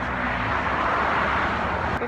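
Road traffic on a city street: a vehicle passing, a steady rushing sound that swells slightly around the middle.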